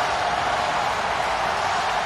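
Stadium crowd cheering a goal: a steady, even wash of many voices with no single voice standing out.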